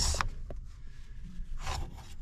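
Recessed metal ashtray in a 1935 Ford's rear side trim panel being worked open by hand: soft rubbing of the metal cup, with a short scrape near the end.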